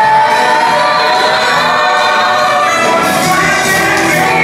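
Musical-theatre number with a group of voices singing together over band accompaniment, with a long held note in the first second.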